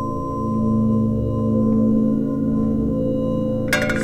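Eerie suspense drone on the soundtrack: several steady low tones held together as one chord, slowly swelling and easing. Near the end comes a brief clatter.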